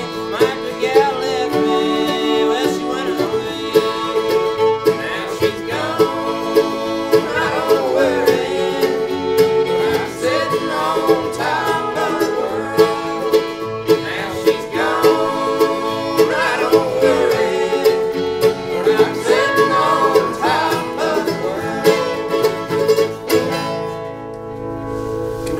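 Bluegrass band playing: acoustic guitars strumming, with fiddle, mandolin and pedal steel guitar, the fiddle and steel sliding between notes. The tune ends right at the close.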